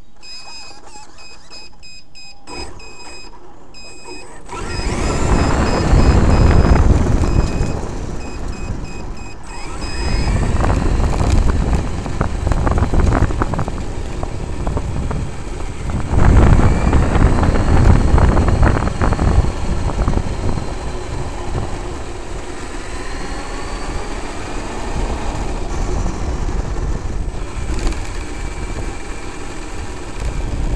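Traxxas X-Maxx electric RC monster truck heard from its onboard camera as it drives along a gravel path. Tyres rumble on the gravel, loud in surges from about five seconds in, and the brushless motor's whine rises and falls. A repeating high beep sounds through the first ten seconds or so.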